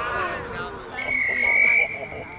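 A voice, then a single high steady tone lasting just under a second, beginning about halfway through and the loudest sound here.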